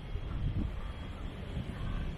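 Outdoor ambience dominated by an uneven low rumble of wind on the microphone.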